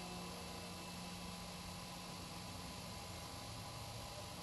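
Steady recording hiss, with the last plucked note of an oud dying away beneath it, its low tone fading out near the end.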